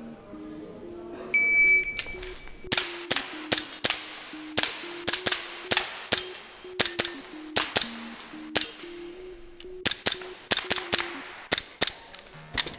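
A shot timer's start beep a little over a second in, then a Tokyo Marui gas-blowback Glock airsoft pistol firing about twenty sharp shots in quick pairs and short strings.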